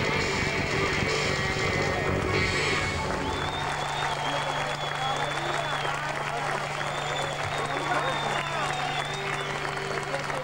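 A live band's final notes ring and stop about three seconds in. Then a concert audience applauds and cheers, with a long high whistle held over the crowd and a steady low hum underneath.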